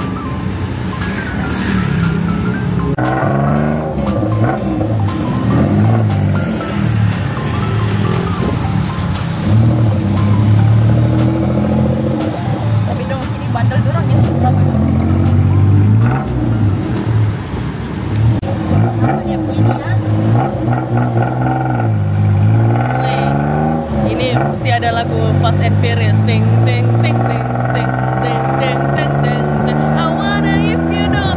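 Tuk-tuk engine running in traffic, its pitch rising and falling again and again as it speeds up and slows down, with several climbs through the gears near the end.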